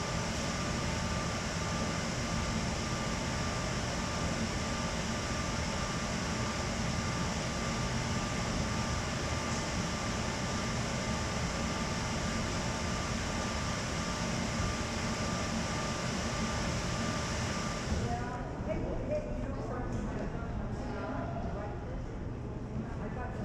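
Ferry engine-room machinery running: a loud, steady mechanical noise with a few steady hums and whines in it. About 18 seconds in it cuts off, giving way to a quieter space with faint voices.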